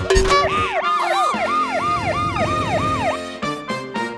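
Cartoon emergency-vehicle siren sound effect: a fast siren that rises and falls about three to four times a second, starting about a second in after a sudden hit and stopping shortly before the end.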